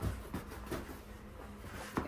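Faint handling sounds of a cardboard insert being fitted into a collapsible fabric storage box: soft rustling with a few light knocks.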